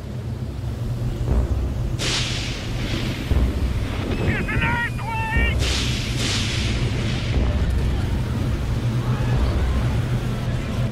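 Cartoon sound effects: a deep, steady rumble with two loud whooshing blasts, about two seconds in and again past the middle, as a beam of light comes down from the sky. Between the blasts there is a brief, high, wavering tone.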